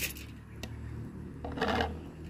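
Small handling noises: a sharp click at the start, then a short scraping rustle near the end as a clear jar is set down on the board beside a stone mortar, over a steady low hum.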